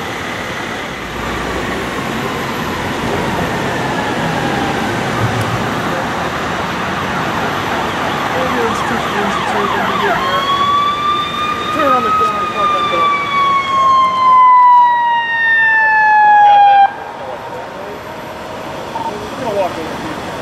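An emergency vehicle's siren wailing: about ten seconds in, a strong tone rises for a couple of seconds, then glides steadily down in pitch for about five seconds and cuts off suddenly. Before it, a steady rush of noise grows louder.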